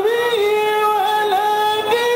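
A man singing solo into a handheld microphone in a high voice, holding long notes with small dips and turns in pitch between them.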